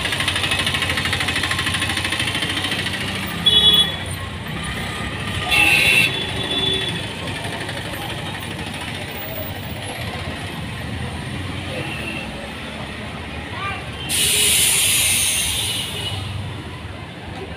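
City buses running at a bus depot, with two short loud blasts a few seconds in and a burst of air-brake hiss lasting about two seconds near the end.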